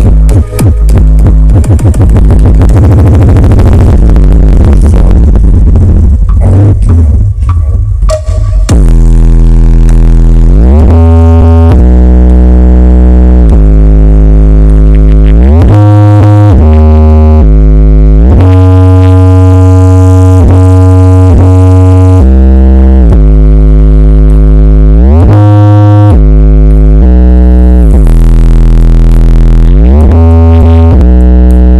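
Very loud, bass-heavy music played through a large outdoor sound system with twenty subwoofers, loud enough to overload the recording. From about nine seconds in it becomes long, held deep bass notes that step and slide from one pitch to the next.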